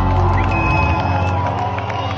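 Live rock band's amplified guitars and keyboards holding a chord through the PA, with the crowd cheering over it. The deep bass drops away about a second in.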